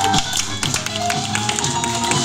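A live band playing a pop song: piano notes over bass and a drum kit, with quick, bright cymbal ticks.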